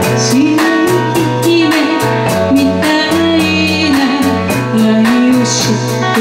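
A woman singing a Japanese pop ballad with a live band: electric guitar, electric bass and drums, the drums keeping a steady ticking beat under the sustained vocal line.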